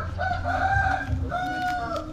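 A rooster crowing: one drawn-out call with a short break a little past halfway, its second part held steady until near the end.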